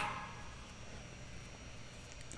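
Quiet room tone: a faint steady hiss just after the tail of a song dies away at the very start.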